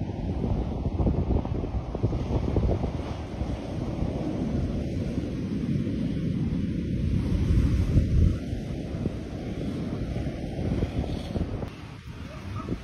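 Wind buffeting the microphone, with the wash of surf breaking on a beach behind it; the noise comes in gusts, loudest about two-thirds of the way through.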